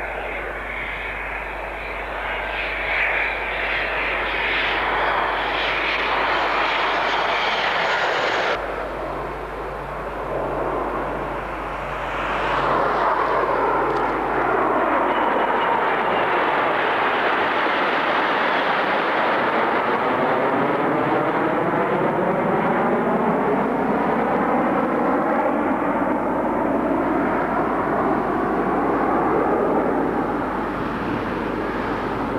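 CF-18 Hornet fighter jets flying past, the steady noise of their twin turbofan engines. The sound changes abruptly about eight and a half seconds in, and from about twelve seconds the jets pass over with a slow, sweeping, phasing whoosh.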